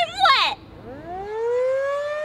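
Civil-defence-style siren winding up: starting about a second in, its tone climbs steeply and then levels off into a steady wail. It is the alarm signalling that the storm is approaching.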